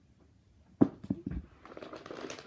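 A sharp thump about a second in, two quicker thumps right after, then the rustle and crinkle of wrapping paper as a large wrapped present is grabbed and lifted.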